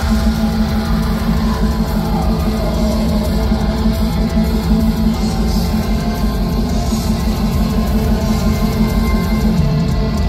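Black metal band playing live at full volume: distorted electric guitars over a steady wall of drums, heard from within the audience.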